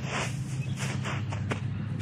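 A few light knocks and rustles as hands and knees shift on a plywood board and dry straw mulch, over a steady low hum.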